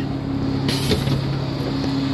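A small regional diesel railcar standing at the platform with its engine idling in a steady low hum, and a brief hiss of air about three quarters of a second in.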